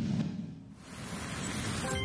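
A TV graphic-transition sound effect: a noise whoosh that swells and rises over the second half, leading into a short musical sting that begins just at the end.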